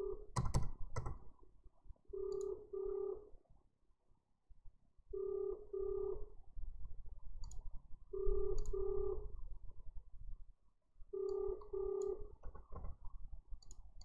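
Telephone ringback tone in the Australian double-ring pattern, two short buzzing rings about every three seconds, four times: an outgoing call ringing out, not yet answered. A few sharp clicks about half a second in.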